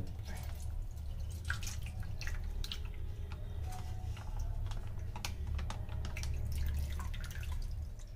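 Water dripping and splashing as a plastic bag of water is tipped out through a fish net into a stainless steel bowl: a run of small, irregular drips and splashes over a steady low hum.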